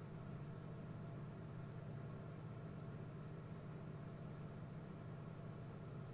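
Faint steady low hum with a light hiss, unchanging throughout, with no distinct event.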